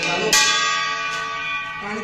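Metal puja bell rung for the aarti. A strong strike about a third of a second in rings on and slowly fades, followed by lighter strikes.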